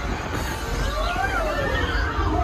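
Dark-ride tornado-scene soundtrack: a rushing wind bed with a low rumble, over which a wavering pitched wail rises and falls twice.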